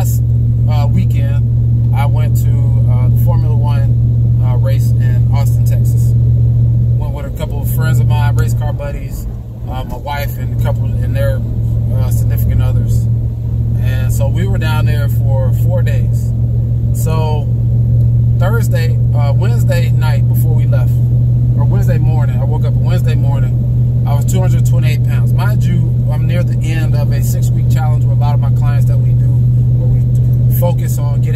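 A man talking inside the cabin of a moving pickup truck, over a steady low drone of engine and road noise; the drone dips briefly about a third of the way in.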